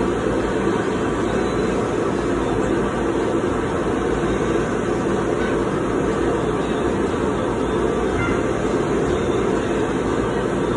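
Air blower of a soft-play ball-feeder hopper and its tubes running steadily: a loud, even rush of air with no rhythm or breaks.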